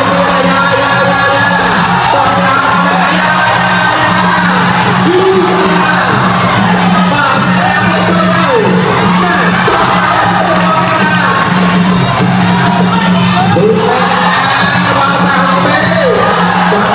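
Traditional Khmer boxing ring music playing continuously: a wavering, pitch-bending reed melody over a steady low drone, with crowd shouts mixed in.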